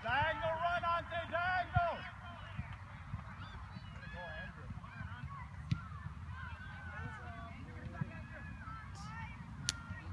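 Honking calls of a flock of birds, loud and overlapping for the first two seconds, then fainter and scattered through the rest, over a steady low rumble.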